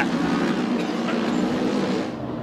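Pack of flat-track racing motorcycles, Kawasakis and a Ducati, running at speed around a dirt mile oval: a steady blended engine drone.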